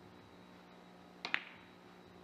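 A three-cushion carom billiards shot: two sharp clicks about a second in, a tenth of a second apart, the second louder. They are the cue striking the cue ball and ball meeting ball.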